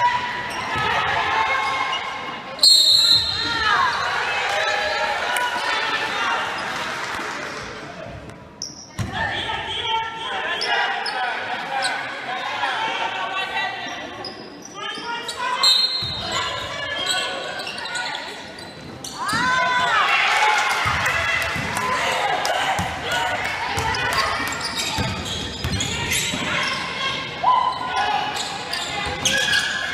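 A basketball bouncing on a hardwood gym floor during play, with players' running footsteps, echoing in a large gym.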